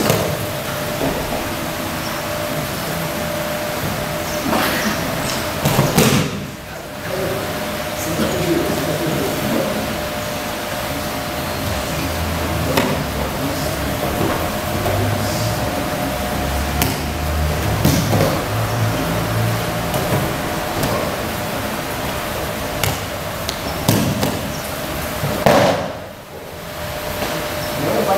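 Thumps and slaps of aikido throws and breakfalls on a hard hall floor, with bare feet shuffling: a handful of sharp knocks scattered through, over a steady hum.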